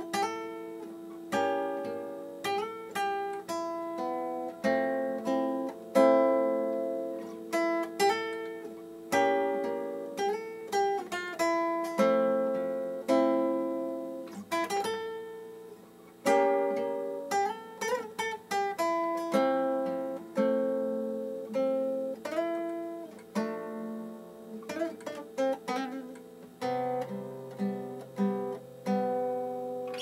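Solo classical nylon-string guitar played fingerstyle: a melody of single plucked notes over bass notes and chords, each note ringing and then fading, at an even, moderate pace.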